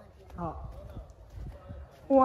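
A short, faint voice about half a second in, over a low rumble and soft irregular knocks.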